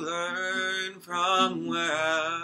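A man singing a slow song in long held notes over acoustic guitar, the voice dropping out briefly about a second in.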